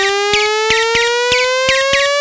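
Electronic music build-up: a synth tone rising slowly and steadily in pitch over a beat of about three hits a second.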